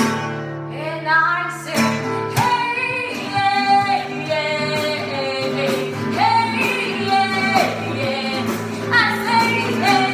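A woman singing over a strummed nylon-string classical guitar, her voice coming in about half a second in.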